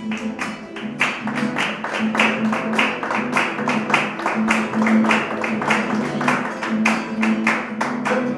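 Acoustic guitar played in a lively rhythm, with hand claps in time, several sharp claps a second.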